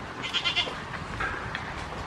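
Goat kid bleating: one short, high-pitched bleat about a quarter second in, then a fainter short call just after a second in.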